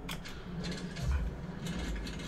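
Many quick, irregular mechanical clicks and ticks over a steady low hum, likely sound effects on the teaser film's soundtrack.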